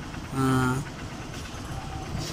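Honda Unicorn's single-cylinder engine idling steadily. A short held vocal sound is heard about half a second in.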